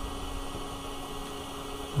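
Steady low hum with an even hiss, a machine or fan running in the background, with no cutting going on.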